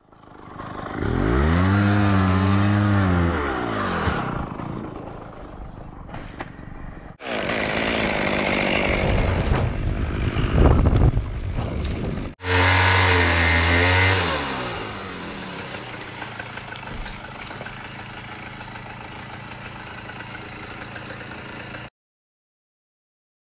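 Gas chainsaw revving up and down and cutting into a palm, in three stretches separated by abrupt breaks; the engine note swells and drops, and the last several seconds run steadier and quieter.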